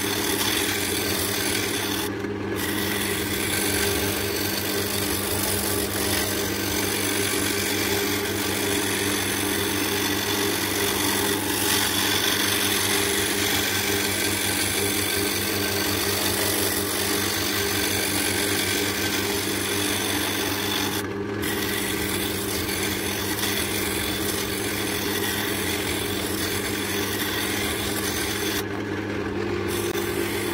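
Roughing gouge cutting an oak blank spinning on a wood lathe: a steady rasping hiss of wood being roughed down to round, over the lathe motor's steady hum. The cut breaks off briefly three times, about two seconds in, around twenty-one seconds, and near the end.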